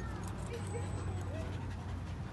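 Long-haired dachshund whining: one arched whine at the start, then two short rising whimpers about half a second and a second and a half in, over a steady low rumble.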